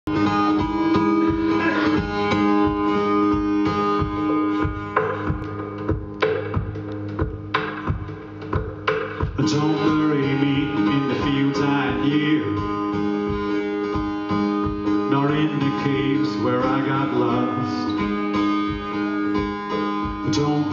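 Solo acoustic guitar strummed live as a song's introduction, with a man's singing voice coming in from about halfway through.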